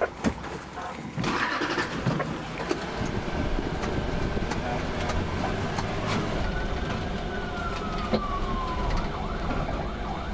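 Ambulance engine and road noise heard from inside the cab as it drives, a steady low rumble after a few knocks in the first second. A faint tone slides down in pitch in the second half.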